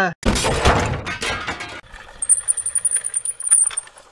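Crash sound effect: a loud smash lasting over a second, then scattered clinks and tinkles of breaking glass settling, with a thin high ring.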